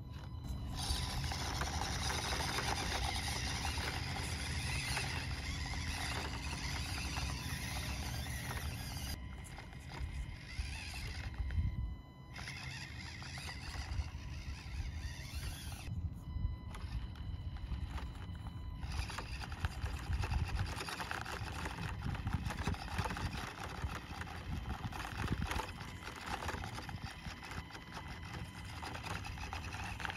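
Axial SCX24 micro RC crawler's small electric motor and gears whining while its tires scrabble on rock during a climb. The sound changes abruptly several times as short attempts are cut together.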